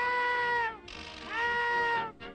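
Cartoon cat meowing twice, two long drawn-out meows, each sliding up in pitch at the start and sagging at the end, the second about halfway through.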